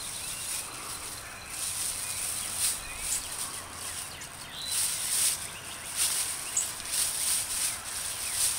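Outdoor ambience with small bird chirps now and then over a soft rustling noise that comes and goes.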